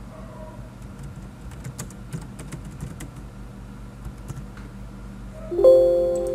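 Typing on a computer keyboard, scattered quick key clicks. Near the end a sudden loud chime-like tone rings out and fades slowly.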